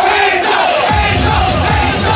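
Festival crowd yelling and cheering over a DJ's electronic dance music; about a second in, a heavy pulsing bass beat comes in suddenly.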